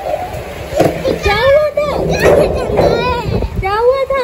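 A young boy squealing and laughing while playing, with several high rising-and-falling cries from about a second in.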